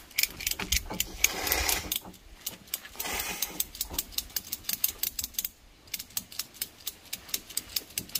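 Ratchet tie-down strap being cranked tight: quick runs of sharp clicks from the ratchet pawl, about five a second, with two longer rasps of the strap webbing about a second and three seconds in.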